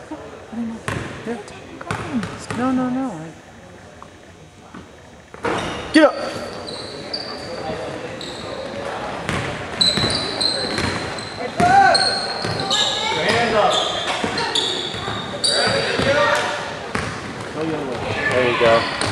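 Basketball game sounds in a gymnasium: a ball bouncing on the hardwood floor and sneakers squeaking in short, high chirps, with spectators' voices. It is fairly quiet for the first few seconds, then busier from about five seconds in.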